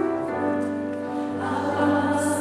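Mixed choir of women's and men's voices singing held chords, moving to new notes about one and a half seconds in.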